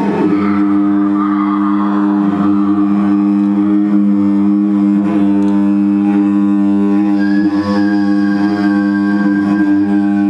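Loud, steady droning music: a low drone of two held pitches with many overtones that does not change, and a thinner higher held tone that comes in about seven seconds in.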